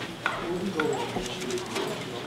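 Several people talking at once in a room: a murmur of overlapping conversation, with no single voice standing out.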